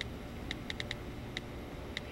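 Mobile phone key clicks as a text is typed: short, high-pitched ticks at an uneven pace, several in quick succession about half a second in, over a low steady room hum.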